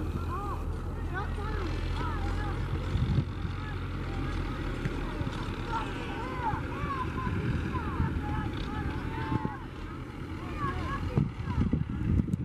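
Outdoor ambience: a steady low drone, with many short rising-and-falling chirps and some voices over it.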